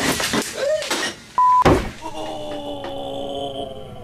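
A man's startled cry as a charged capacitor he is holding shocks him. A short 1 kHz censor bleep comes about one and a half seconds in, with a sharp thump right after it, then a steady humming tone to the end.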